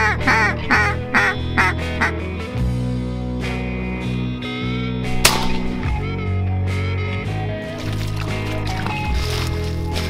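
Hand-blown duck call sounding a run of about six quacks in the first two seconds, over background music. A single shotgun shot about five seconds in.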